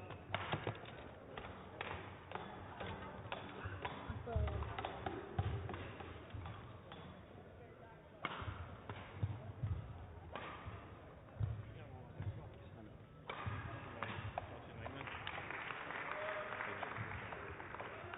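Indoor sports-hall ambience between badminton rallies: faint background voices, with scattered light taps and several low thuds, and a busier murmur over the last few seconds.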